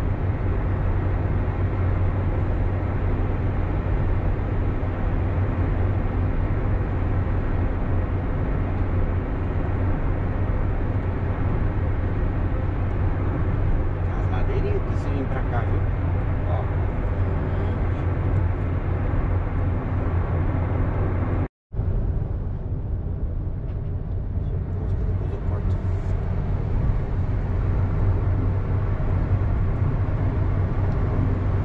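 Steady road and engine noise inside a moving car's cabin at highway speed, with a strong low drone. A little past two-thirds through, the sound cuts out for an instant.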